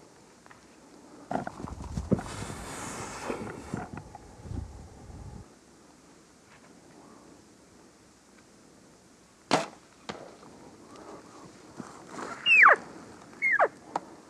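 A bull elk raking a pine tree with its antlers: a few seconds of scraping and branch rustling. About halfway through comes a single sharp snap of a compound bow being shot. Near the end there are two short, loud, high calls, each sliding steeply down in pitch.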